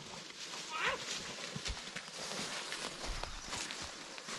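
Footsteps crunching and rustling through dry grass, twigs and dead leaves, a steady run of crackling steps. A brief voice-like call sounds about a second in.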